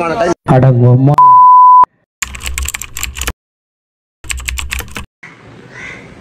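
A man talking is cut off about a second in by a loud, steady, high beep lasting well under a second: an edited-in censor bleep. Then come two short stretches of rapid clicking like keyboard typing, separated by dead silence, and faint room tone near the end.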